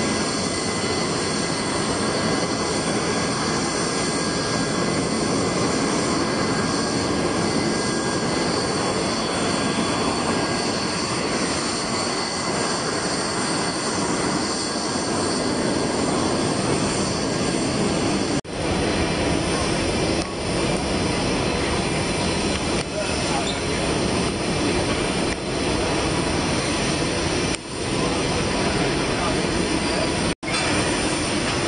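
Steady noise of a jet airliner running on the airport apron, with a high whine on top and voices mixed in. Several brief dropouts break the sound in the second half.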